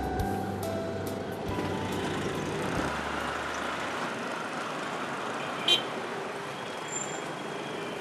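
Road traffic passing on a busy street, with a brief sharp sound about six seconds in. Faint music fades out in the first second or two.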